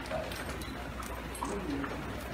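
Wet handling of bundled water-lotus stems in a trough of water: splashing and irregular soft knocks and clicks over a steady watery hiss, with faint voices in the background.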